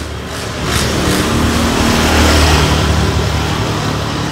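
A motor vehicle's engine running close by with road noise, growing louder over the first couple of seconds and staying loud.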